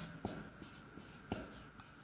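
Marker writing on a whiteboard, faint, with a few short ticks as the tip strikes the board, the clearest one about a second in.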